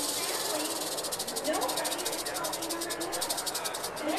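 Western diamondback rattlesnake shaking its raised tail rattle: a fast, evenly pulsing high buzz that stops abruptly near the end. It is the snake's defensive warning.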